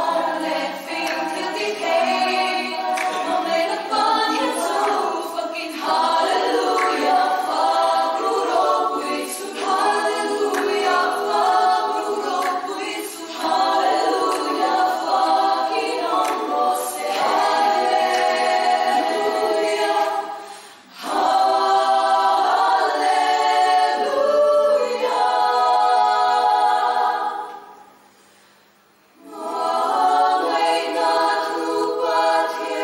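Women's choir singing a cappella, with a short break about two-thirds through and a pause of about two seconds near the end before the voices come back in.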